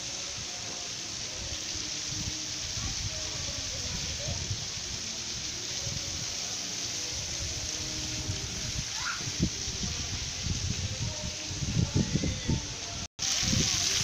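Steady hiss of water jets spraying and splashing, with low rumbling gusts of wind on the microphone.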